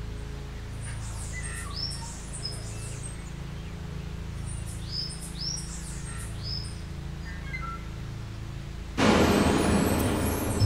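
Songbirds chirping repeatedly, short curved calls over a low steady drone. About nine seconds in, a sudden loud rush of noise begins and covers them.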